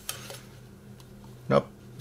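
Faint handling noise from a plastic model-kit sprue being moved about, with a light click. A brief vocal sound comes about a second and a half in.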